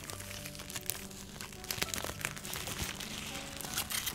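Plastic shrink-wrap being slowly peeled off a spiral sketch pad, crinkling and crackling in many small clicks, over soft background music.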